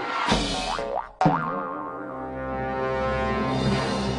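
Animated studio-logo jingle: a dense burst of music with quick rising cartoon pitch swoops, a sudden break about a second in, then a long sustained chord over a low rumble that swells toward the end.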